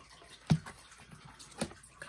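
A faux-leather cash binder being unsnapped and opened by hand: a sharp click about half a second in, a softer click near the end, and light handling in between.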